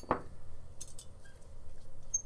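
A sharp click just after the start, then a few faint light clicks and ticks.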